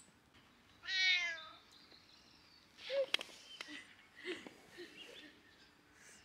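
A domestic cat meowing: one clear meow about a second in, followed by a few fainter, shorter sounds.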